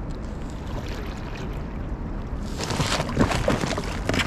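Thin ice crackling and scraping against an inflatable kayak's hull as the bow pushes into a sheet of ice. It starts as a low hiss and grows into a louder, irregular crackle about two and a half seconds in.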